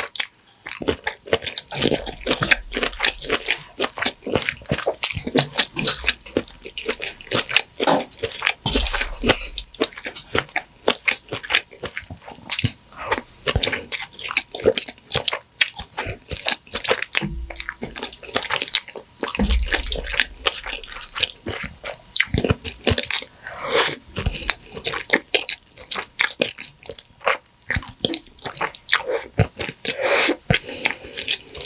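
Close-miked wet chewing and mouth sounds of someone eating creamy shrimp fettuccine alfredo: a dense, irregular run of sticky smacks and clicks, several a second.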